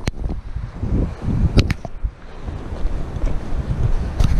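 Wind buffeting the camera microphone in uneven low gusts, with a few sharp clicks, two close together about a second and a half in.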